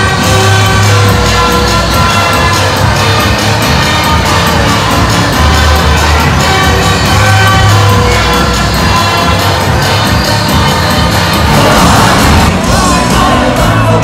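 Loud live band music through an arena PA, with a steady beat, heavy bass and held keyboard-like tones, and a large crowd cheering along. Singing voices come in near the end.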